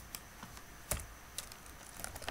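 Computer keyboard keystrokes: a handful of faint, scattered key clicks, the loudest about a second in.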